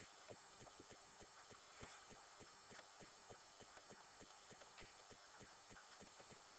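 Faint, irregular clicks and taps of a pen writing on paper, several a second, over a low hiss.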